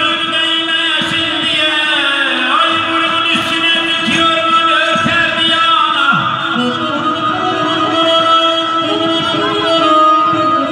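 Live amplified Azerbaijani wedding music: a male singer with a microphone over button accordion (garmon) and electric guitar. A sustained steady note runs under gliding vocal lines throughout.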